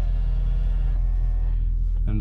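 Electric power-folding side-mirror motors of a BMW E39 M5 running as the mirrors fold, a faint steady whine that dies away shortly before the end, over a steady low rumble.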